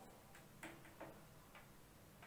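Faint clicks and scratches of a marker writing on a whiteboard, a few soft strokes spread about half a second to a second apart over near-silent room tone.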